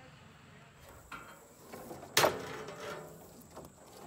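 A single sudden clunk a little past halfway through, with fainter knocks before and after it.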